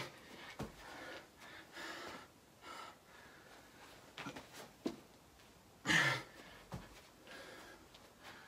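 A man breathing hard from exertion while doing nonstop burpees, with loud gasping breaths right at the start and again about six seconds in. A few light knocks come from his hands and feet landing on the floor.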